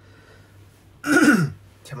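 A man clears his throat once, about a second in: a short, loud burst whose voiced part falls in pitch.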